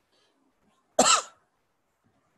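A single short cough, about a second in.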